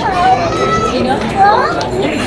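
Voices of a street crowd, with a child's high-pitched voice calling out close by, rising sharply about one and a half seconds in.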